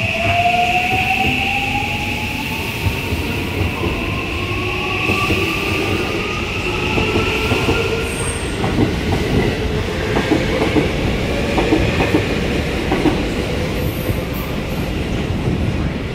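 JR West 323 series electric train departing, its motor whine rising steadily in pitch as it accelerates. In the second half, wheels clack over rail joints more and more quickly as the cars run past.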